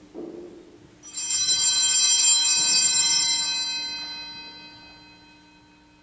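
Altar bells (a cluster of small Sanctus bells) shaken at the elevation of the consecrated host. They ring for about two and a half seconds from about a second in, then die away.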